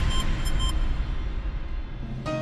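Closing theme music of a TV programme dying away. Its held notes end about two-thirds of a second in, leaving a deep low drone that fades near the end.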